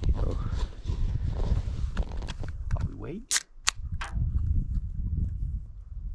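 Wind buffeting the microphone in an uneven rumble, with three sharp clicks in quick succession a little past the middle.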